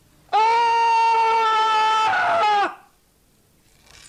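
A tenor's voice holding one long, loud, high sung note for about two and a half seconds, its pitch sagging as it cuts off.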